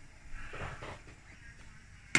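Faint sound of water boiling in a stainless steel pot of small tapioca pearls, with a soft swish about halfway through.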